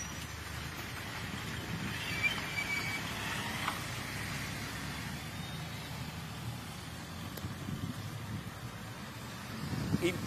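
Outdoor street sound: a steady rumble and hiss of road traffic, with no distinct single event.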